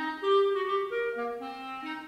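A wind instrument plays a short melody of separate clear notes, one after another, going up and down in pitch.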